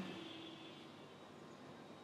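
Faint, steady noise of an electric fan running, with a thin high whine over the hiss.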